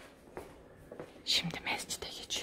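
A person whispering, breathy and hissy, starting about a second in, with faint light knocks before it.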